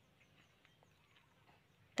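Near silence: faint outdoor ambience with a few faint, brief high chirps.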